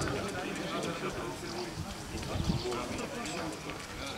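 Men's voices talking in the background, overlapping and indistinct, with a few light knocks.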